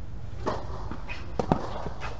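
Sounds of a tennis rally on a clay court: a scuff about half a second in, then a few sharp knocks close together a little later, from a player's footsteps on clay and the ball being struck.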